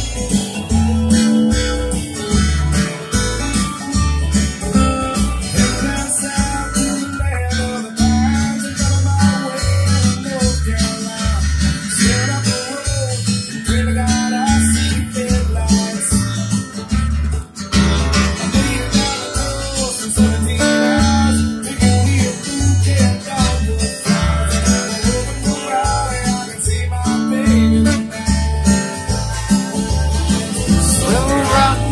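Acoustic-electric guitar strummed in a steady rhythm, with a regular low beat about twice a second underneath.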